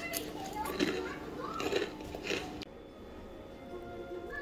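Faint, short crunches of a fried flour snack being bitten and chewed. A little after two and a half seconds the sound cuts to faint background music.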